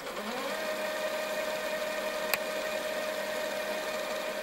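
A sound-design drone under a chapter title card. It is a steady hum that glides up into its pitch in the first half second and then holds level, over a faint hiss, with a single click about two seconds in.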